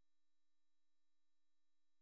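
Near silence, with only a very faint steady tone underneath.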